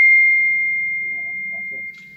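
A single high, steady electronic tone, loud at first and slowly fading over about two seconds.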